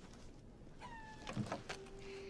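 A short, high animal cry about a second in, followed by a few soft knocks, then a steady low tone that begins near the end.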